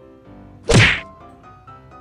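A single loud, sudden whack a little under a second in, with a short low tail, over faint background music.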